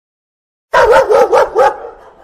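A dog barking four times in quick succession, starting under a second in.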